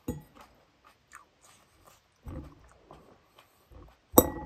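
Eating noises close to the microphone: chewing and mouth sounds, with a short knock at the start, a few small clicks, and two low, muffled bursts near the middle and end.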